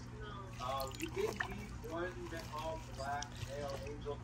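Water sloshing and dripping as a hand works through aquarium moss in a shallow plastic tub of tap water, under faint background voices and a steady low hum.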